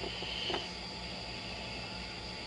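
Steady background hiss with a faint high steady whine and low hum, broken by a short bump about half a second in.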